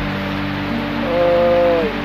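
A voice holding one long drawn-out vowel about a second in, over background music with a steady low drone.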